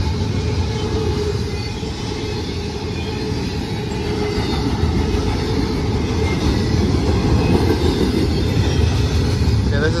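Double-stack intermodal well cars rolling past close by: a steady low rumble of steel wheels on rail.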